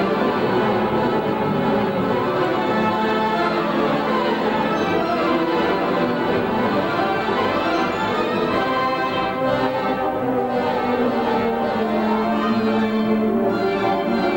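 Mighty Wurlitzer theatre pipe organ playing a busy, full-textured piece, many sustained notes stacked at once at a steady loudness.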